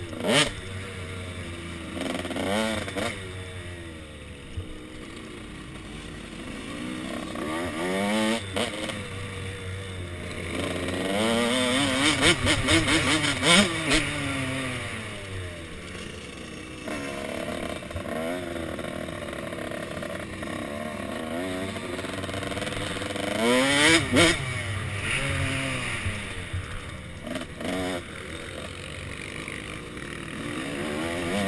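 KTM SX 105 two-stroke dirt bike engine, heard close from a helmet camera, revving up and down over and over as the bike is ridden around a motocross track. The loudest runs up the revs come about twelve to fourteen seconds in and again near twenty-four seconds.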